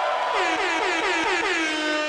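Synthesizer sounding a held note, then a rapid run of downward pitch swoops, several a second, that settle into a steady lower note.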